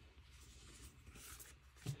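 Faint rustle of paper sticker sheets being handled and swapped, with one brief soft tick shortly before the end.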